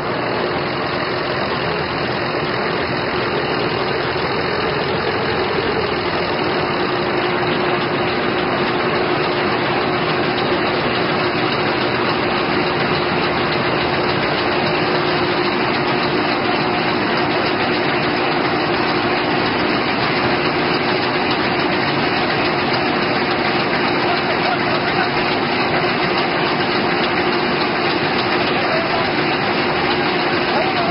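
Engine-driven threshing machine running steadily while threshing rice: an even, dense mechanical noise with a constant hum underneath.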